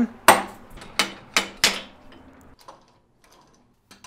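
Metal clanks and knocks as a chuck is fitted to a wood lathe's headstock: four sharp strikes in the first two seconds, then a few faint ticks.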